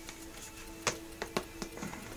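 Scattered plastic clicks and knocks from an auto-darkening welding helmet being handled and pulled on over ear defenders, over a steady low hum.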